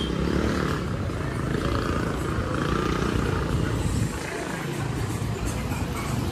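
Outdoor street noise: a steady low rumble with a noise haze over it, easing slightly about four seconds in, and faint higher sounds through it.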